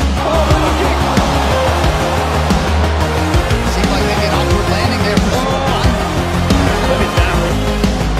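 Background music with a deep, steady bass and short gliding tones above it.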